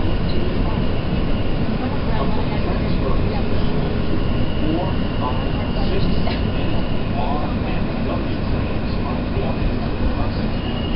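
New York City subway Q train heard from inside the car as it moves through a station: a steady rumble of wheels and running gear, with a thin high whine rising out of it for a few seconds midway.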